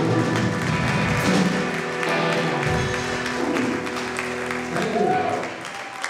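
Live rock band with electric guitars, drum kit and keyboard playing, with sustained chords and cymbals. The sound turns ragged and drops in level about five seconds in, as at the end of a song.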